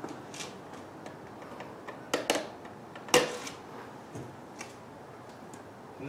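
A few scattered clicks and knocks of hands handling a small device, the loudest about three seconds in, over a steady faint hiss.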